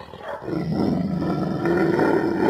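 Bully Kutta, a large mastiff-type dog, growling: a low, rough, continuous growl that dips briefly just after the start and then carries on steadily.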